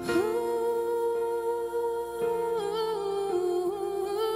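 A woman's voice holding one long sung note with vibrato over sustained chords on a Roland electric keyboard. The note steps down slightly about halfway through, and a lower keyboard note comes in at the same time.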